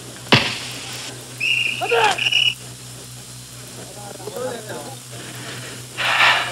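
Old TV drama soundtrack with faint voices over a steady low hum. A sharp knock comes about a third of a second in, and a brief steady high tone sounds for about a second around the two-second mark.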